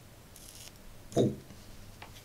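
A man's short startled 'Oh!', the loudest sound, comes about a second in. It follows a brief soft high hiss about half a second in, over a faint low hum.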